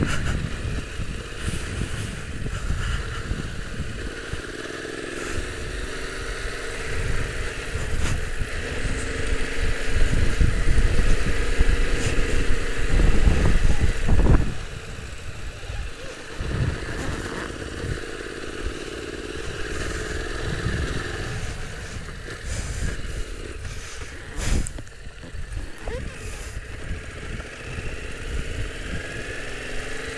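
Yamaha Ténéré 700's parallel-twin engine running as the bike is ridden along a dirt track, the engine note rising and falling with the throttle. A louder low rumble comes in for a few seconds near the middle.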